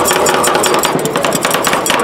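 Two flat steel spatulas chopping and tapping ice cream against a stainless-steel rolled-ice-cream cold plate: a fast, rapid run of sharp metallic clacks.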